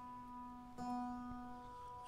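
Acoustic guitar notes ringing out softly and fading, with a fresh pluck of the same note just under a second in.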